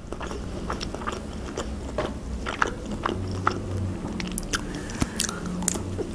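A person chewing a piece of sausage close to the microphone: irregular small wet mouth clicks and smacks.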